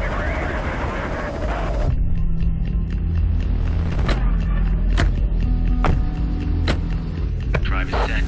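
Background music: a burst of rushing noise during about the first two seconds, then a low, steady bass bed with sharp percussive hits roughly once a second.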